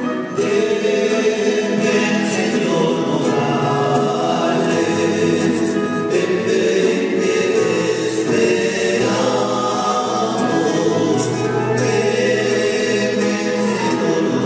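A choir singing a church hymn, many voices together in a sustained, continuous melody.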